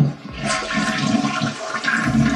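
A toilet flushing: a short thump at the very start, then water rushing steadily from about half a second in.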